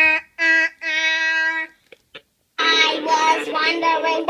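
A child's voice singing: a few short notes held on one pitch, then after a brief pause a fuller, layered stretch of singing with several pitches at once.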